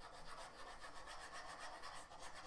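Faint, rapid back-and-forth scrubbing of a stylus tip on a drawing tablet's surface while erasing.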